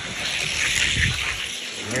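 Two Hot Wheels die-cast cars, a Roger Dodger 2.0 and a Bone Shaker, rolling down a two-lane gravity race track: a steady rushing whir of small wheels on the track lanes, easing off slightly near the end as they reach the finish.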